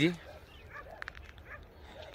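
A dog barking faintly a few times in short barks, the clearest about halfway through, over quiet outdoor background.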